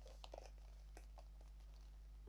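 Near silence: room tone with a few faint, short clicks and rustles in the first second and a half, from a small monogram canvas pouch being handled.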